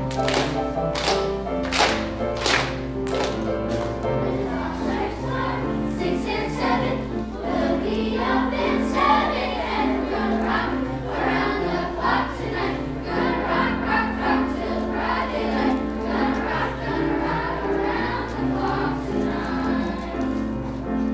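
Children's choir of fifth- and sixth-graders singing with piano accompaniment. In the first few seconds a sharp beat sounds a little more than once a second under the voices.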